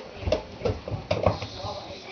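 Small children's footsteps thudding up carpeted stairs: about six uneven, quick thumps.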